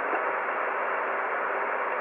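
Steady static hiss from a radio receiver's speaker, an even rush of band noise with no signal on it, cut off above the treble like receiver audio.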